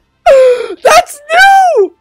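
A young man's wordless wailing cries of excitement, three in a row: a falling one, a short one, then a longer drawn-out one that rises and falls.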